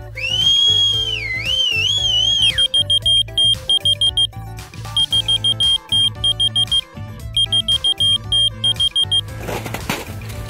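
A person whistles one wavering high note for about two and a half seconds. A whistle-activated key finder keychain answers with three runs of rapid, shrill electronic beeps, the sign that it has picked up the whistle and is giving away where the lost keys lie. Background music plays underneath.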